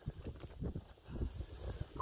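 Soft, irregular thuds and scuffs of a person getting up off the ground and stepping on dry leaf litter and dirt.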